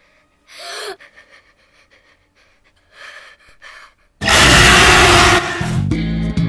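A sharp gasp, then near-quiet. About four seconds in, a sudden, very loud burst of noise lasts about a second, and music starts just after it.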